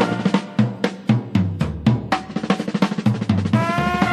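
Drum break in a traditional jazz band recording: snare and bass drum strokes, about four or five a second, over a thin bass line, with the horns coming back in with held notes near the end.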